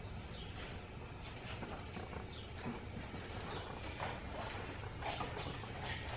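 Puppies' claws clicking and scrabbling irregularly on a bare concrete floor as they tug and wrestle over a toy.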